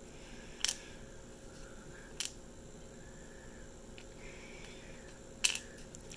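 Three sharp little clicks, spaced about one and a half to three seconds apart, as small polyhedral dice are set into the shaped slots of a wooden dice case. The last click, near the end, is the loudest.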